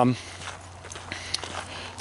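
Quiet footsteps of a person walking, a few faint steps under a low background hum.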